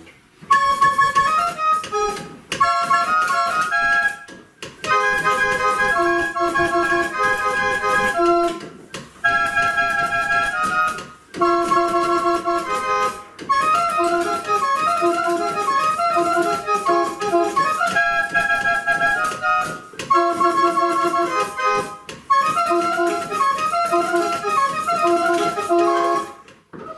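Pinned-barrel pipe organ playing a tune: as the barrel turns, its pins open air to a row of wooden pipes, sounding a bright melody in short phrases with brief pauses between them.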